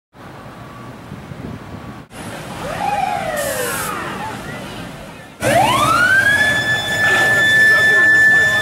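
Police siren sounding in falling pitch sweeps. After a sudden cut about five seconds in, it winds up and holds a steady high wail.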